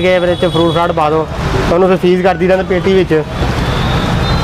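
A man talking close to the microphone, with steady street noise behind him.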